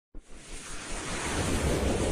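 Intro sound effect: a rush of noise, like wind or surf, that swells steadily louder as it builds into a whoosh.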